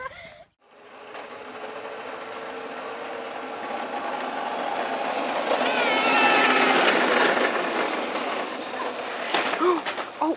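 Small engine of a child's mini dirt bike buzzing. It grows louder to a peak about six seconds in, then eases off a little, and a few sharp knocks come near the end.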